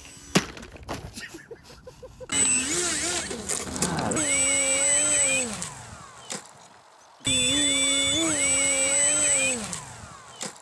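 Electric RC airplane motor and propeller running in two spells, its whine wavering in pitch with the throttle and sliding down as the throttle is cut. A steady high-pitched tone from the speed controller rides over it. Before that come a few knocks and clicks, the sharpest about half a second in, fitting a model's hard landing or crash.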